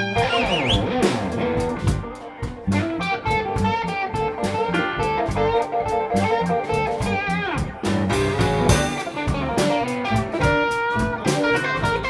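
Live blues band playing an instrumental break: electric guitar and amplified harmonica with bent, wavering notes over bass and drums keeping a steady beat.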